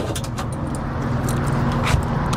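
A vehicle engine idling steadily, with light knocks as a slide-out tray is pushed into an aluminium checker-plate toolbox and a sharper clack near the end as the toolbox door is shut.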